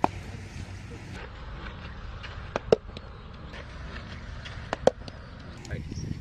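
Two short, sharp knocks about two seconds apart, each with a brief ring, over a steady outdoor background hum.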